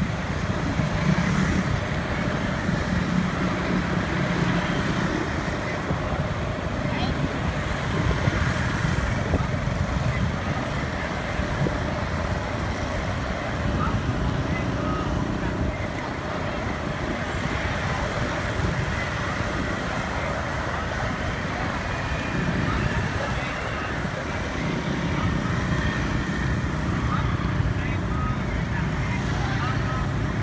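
Steady street traffic of motorbikes and cars passing, with engine rumble swelling louder twice, and indistinct voices of people nearby.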